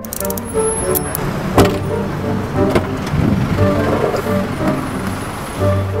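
Background music over the noise of a car and street traffic, with a few sharp clicks or knocks, the loudest about a second and a half in.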